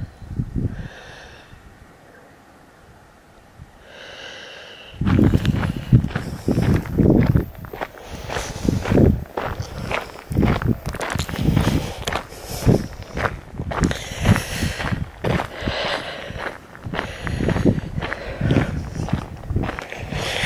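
Footsteps crunching on a gravel track at a steady walking pace, about two steps a second, starting about five seconds in after a quieter stretch.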